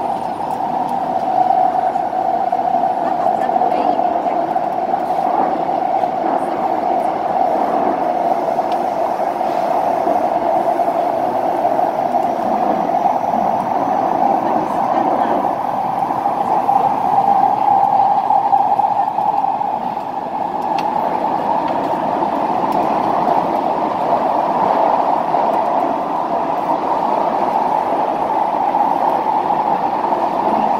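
Singapore MRT train running, heard from inside the passenger car: a loud, steady running noise with a strong midrange hum that hardly changes, dipping slightly about two-thirds of the way through.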